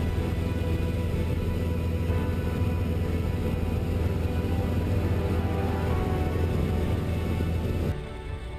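Steady drone of a single-engine light aircraft's engine and propeller heard inside the cockpit, with music underneath. It starts and cuts off abruptly.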